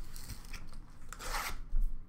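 A cardboard trading-card box being handled: a scraping rustle as it slides and is picked up, then a knock as it is set down on the counter near the end.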